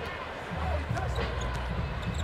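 A basketball being dribbled on a hardwood court over the steady low rumble of an arena crowd.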